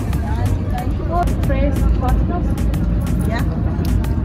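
Street ambience: a steady low rumble of traffic under brief, faint snatches of talk.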